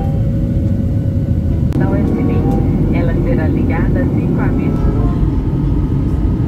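Steady low rumble of a jet airliner's cabin in flight, with faint voices over it in the middle of the stretch.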